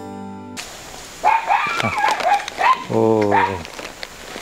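Soft piano music breaks off about half a second in. Then a dog barks repeatedly in short, quick barks, with one longer bark about three seconds in.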